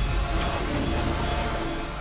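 Dramatic background music with a heavy, steady low drone and a few held tones.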